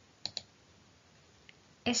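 Two quick, sharp clicks close together, then a faint third click, over quiet room tone; a woman's voice begins speaking just before the end.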